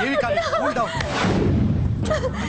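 A woman's anguished cries, a string of short rising-and-falling wails, over a loud low rumble.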